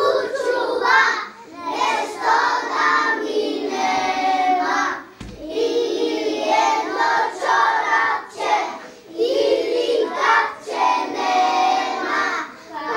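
A group of young children singing together in short phrases, with brief pauses between them.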